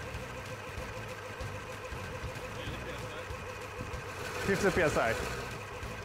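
A 3D-printed six-cylinder radial air compressor running steadily with a hum and a whine of several steady tones. It is pumping air into a soda-bottle tank against rising pressure.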